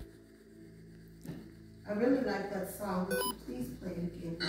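A single click, then about two seconds later indistinct voice-like sound with no clear words, joined about three seconds in by a short electronic beep.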